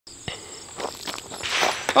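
Footsteps crunching on gravel, with a few scattered steps and shuffles as a person steps back. A steady high insect buzz, like crickets, runs behind them.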